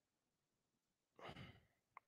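Near silence, then about a second in a man's brief, breathy sigh into a close microphone.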